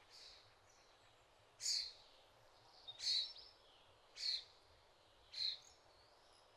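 Bird calling: a short, sharp, high call repeated four times, about once every 1.2 seconds, over a faint steady hiss.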